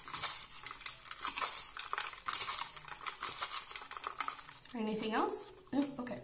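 A small deck of oracle cards being shuffled by hand: a fast, continuous run of card clicks and slides. A short vocal sound comes near the end.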